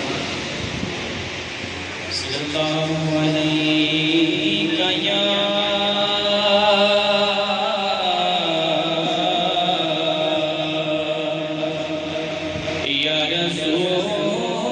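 A man's voice chanting through a microphone, holding long drawn-out notes that bend slowly in pitch. It starts about two and a half seconds in and breaks off briefly near the end before going on.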